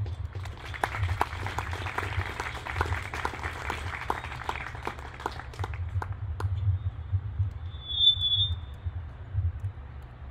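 A small audience applauding: dense clapping that thins out and stops about six seconds in. A short high-pitched tone sounds near the end.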